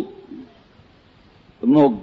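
A man's voice delivering a sermon: a phrase trails off, there is a pause of about a second with only faint hiss, and he starts speaking again near the end.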